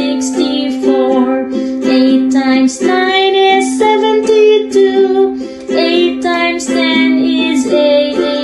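Music: a children's multiplication song with a voice singing the eight times table, 'eight times eight is sixty-four' and 'eight times nine is seventy-two', over a plucked-string backing.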